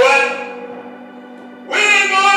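Gospel singing through a church sound system: a loud held note at the start fades away, quieter sustained tones carry on, and a new sung phrase comes in near the end. A steady low tone runs underneath.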